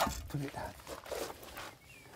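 A person's short voiced sound about a third of a second in, then faint rustling noise that dies down to quiet.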